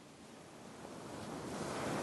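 A steady rushing noise like surf, fading in from very quiet and growing steadily louder.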